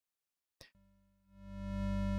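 Near silence with a short click, then, about a second and a half in, a Native Instruments Massive synth pad swells in slowly on its long attack and settles into a steady low chord. The patch is a sine-triangle oscillator, a smooth square an octave up and a sub sine-square.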